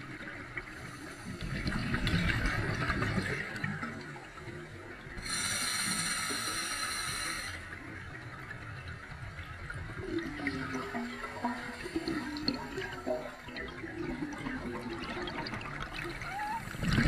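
Scuba diver breathing through a regulator underwater: a rush of exhaled bubbles in the first few seconds, a bright hissing inhalation from about five to seven and a half seconds in, then softer bubbling of the next exhalation.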